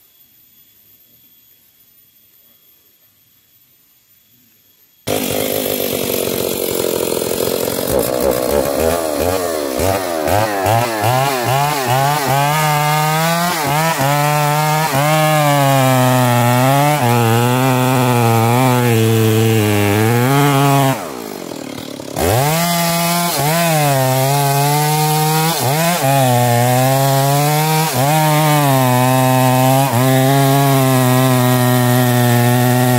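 Two-stroke chainsaw cutting into a standing tree trunk at high revs, its engine note wavering up and down as the chain loads and frees in the cut. It starts abruptly about five seconds in after faint background, and about two-thirds of the way through it drops briefly toward idle before revving back up into the cut.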